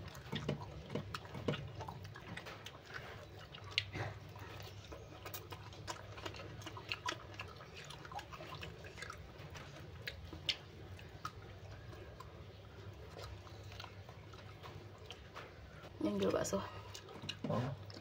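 Close-up eating sounds of a person chewing food taken by hand, with many small, scattered mouth clicks and smacks over a low steady hum. A voice comes in near the end.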